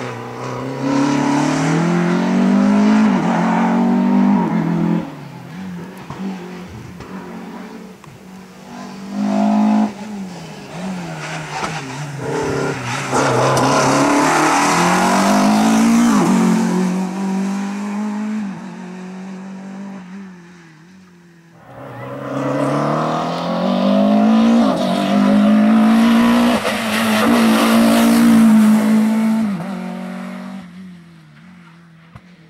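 Renault Clio RS Cup race car's four-cylinder engine revving hard, its pitch climbing and dropping again and again as it accelerates, shifts and lifts between the cones. It is loudest as the car passes close by. About two-thirds of the way through it drops away briefly, then comes back loud.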